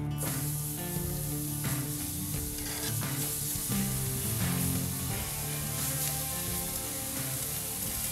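Spice-rubbed flank steak sizzling on the cast-iron grates of a charcoal grill at about 600 degrees, a high-heat sear; the sizzle starts suddenly as the meat is laid down.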